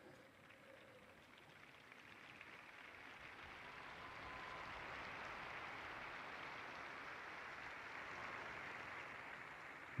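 Faint applause from a large open-air crowd, swelling over the first few seconds and then holding steady.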